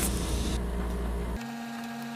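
A steady low hum with background noise. About halfway through, the low rumble drops away and a steady mid-pitched tone continues.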